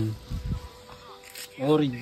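A faint steady buzz with one low thump about half a second in, then a man's voice near the end.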